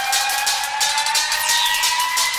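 Hardtek/tekno track in a breakdown: a held synth tone slowly rising in pitch, with repeated falling sweeps above it and little bass or kick drum.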